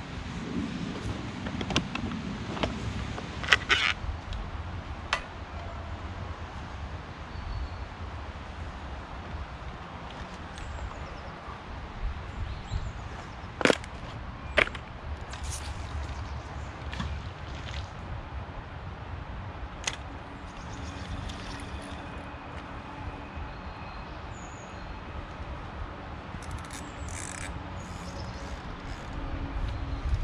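Carp-fishing tackle being handled: scattered sharp clicks and knocks, bunched in the first five seconds and again around the middle, over a low steady rumble. A few faint bird calls come in the second half.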